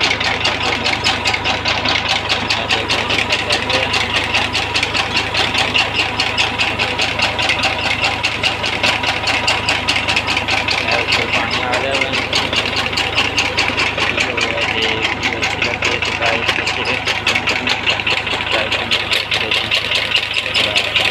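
A tractor's diesel engine running steadily with a rapid, even pulse, driving the well's pump through a pipe from the well.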